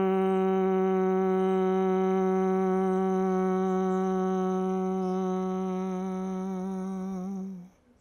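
A man humming one long, steady, held note with closed lips. It fades slightly and stops shortly before the end.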